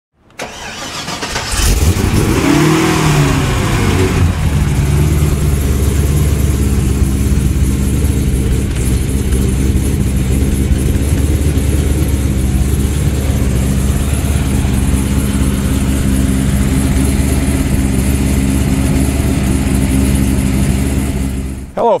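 Supercharged LS2 V8 of a 2007 Corvette being started: it catches within the first two seconds, flares up in revs and drops back, then idles steadily through its Borla exhaust.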